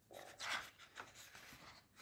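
Soft paper rustle of a large glossy tour book's page being handled and turned, loudest about half a second in.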